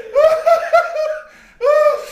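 A man's uncontrollable belly laughter: a quick run of high-pitched laughs, a short break for breath, then another burst near the end.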